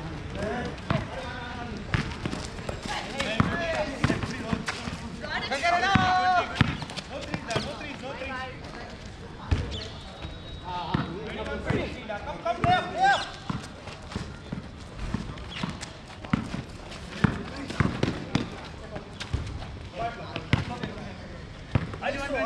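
Basketball players calling out to each other in a game, voices loudest about six seconds in and again around eleven to thirteen seconds, with a basketball bouncing on the hard court and sharp knocks of play in between.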